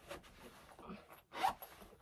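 Zipper of a black patent knee-high boot being drawn up, one quick zip about a second and a half in, with a few short scrapes before it.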